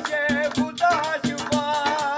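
Punjabi folk song: a man singing a wavering melody over a fast, even beat of hands striking steel cooking pots used as drums, with the jingling metal of a chimta (fire tongs) ringing on the strokes, about four beats a second.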